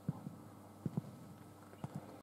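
Three quick pairs of soft, low thuds about a second apart, like feet stepping or shifting on a sports-hall floor.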